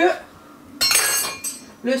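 Kitchenware clattering and clinking with a bright ringing, starting about a second in and lasting well under a second.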